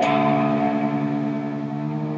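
Electric guitar played through an amplifier: a chord struck once at the start and left to ring, slowly fading.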